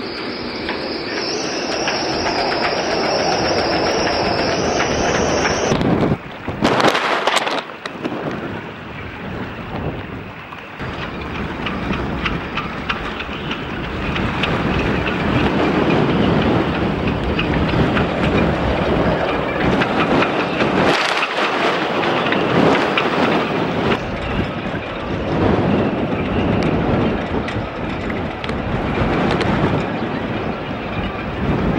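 Gale-force wind of about 70 mph howling and buffeting the microphone in surging gusts, with a sharp loud blast about six seconds in.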